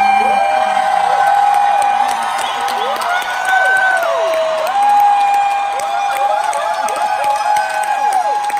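Concert audience cheering and screaming: long, high-pitched shrieks and whoops overlapping and rising and falling, with scattered clapping.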